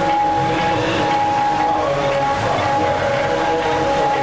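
Harmonium holding sustained chords in Sikh kirtan music, steady notes that change only slightly, with no singing voice over them.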